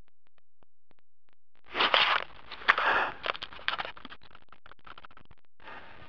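Close rustling and scraping on the microphone, with a few sharp crackles, starting about two seconds in after a near-silent start; it is typical of a camera being handled.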